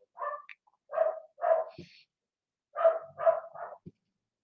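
A dog barking in short single barks: three spread over the first second and a half, then a quicker run of three near the end.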